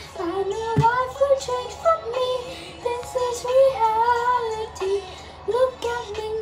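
A young woman singing a wordless melody, her voice gliding between held notes.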